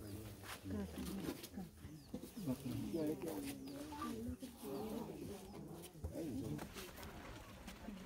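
Low, indistinct voices of people talking quietly, no words clear.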